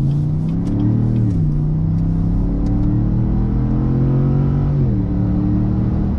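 A GMC Yukon AT4's 6.2-litre naturally aspirated V8 with a Borla exhaust under full-throttle acceleration, heard from inside the cabin. The engine note climbs, drops at an upshift a little over a second in, climbs again more slowly, and drops at a second upshift near the end.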